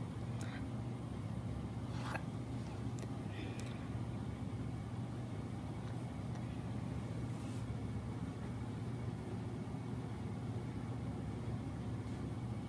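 Steady low hum with a few faint clicks in the first four seconds.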